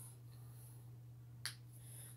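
A single sharp finger snap about one and a half seconds in, over a faint steady low hum.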